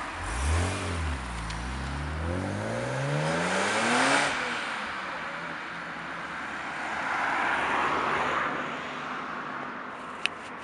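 BMW Z4 M roadster's 3.2-litre straight-six pulling away hard: a short rev, then the pitch climbing for about three seconds until an upshift about four seconds in, then running on further off as the car drives away.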